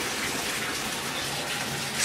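Water running steadily into a filling bathtub.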